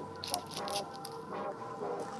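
Paper omikuji fortune slip crinkling as it is twisted and knotted onto a string, with a few short crackles.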